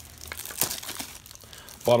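Clear plastic wrap crinkling in quick, irregular crackles as it is peeled off small tin boxes.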